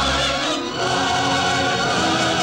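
Orchestral waltz music from a 1940s film soundtrack, with a choir singing along.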